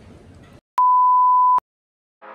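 A single steady high-pitched test-tone beep, the kind laid over TV colour bars, lasting just under a second. It switches on and off abruptly with a click at each end.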